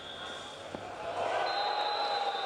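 Wrestling-room ambience in a big hall: a single dull thump of wrestlers' feet or bodies on the mat a little before the middle, then a voice calling out from about a second in.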